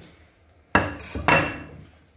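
Kitchenware clattering: two sharp knocks with a brief metallic ring, about three-quarters of a second and a second and a quarter in.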